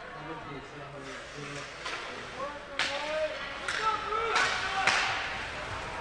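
Ice hockey rink sound during live play: faint voices echo through the arena, and about four sharp cracks of sticks striking the puck or the puck hitting the boards ring out in the second half.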